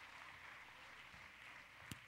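Near silence: faint room tone, with one brief click near the end.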